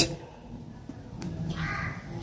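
A faint, short bird call near the end, over low background noise.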